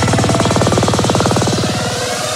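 Progressive psytrance build-up: with the kick and bass dropped out, a very fast buzzing roll of repeated synth and drum hits runs on, easing slightly in level.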